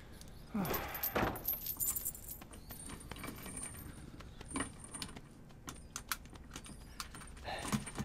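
Metal keys and a chain jangling and clinking at a prison cell door, densest in the first couple of seconds, then a few lighter clinks. A short grunt-like voice sounds near the end.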